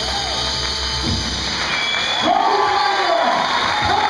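Swing dance music ends about a second and a half in, and an audience breaks into cheering, whooping and applause.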